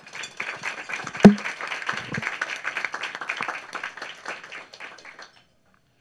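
A room of people applauding for about five seconds, dying away near the end. A single sharp knock about a second in is the loudest sound.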